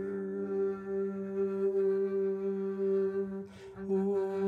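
A man humming long, steady low notes while he plays an upright string instrument. The hum is broken by a quick breath in about three and a half seconds in.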